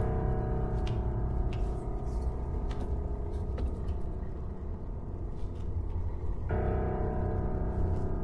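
Horror film score: sustained keyboard chords over a low drone, with a new chord coming in about six and a half seconds in.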